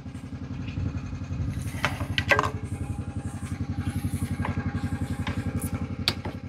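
Single-cylinder ATV engine idling with a steady, even beat of about ten pulses a second. A few light clicks and knocks come about two seconds in.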